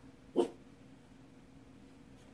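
A pet dog gives a single short bark about half a second in.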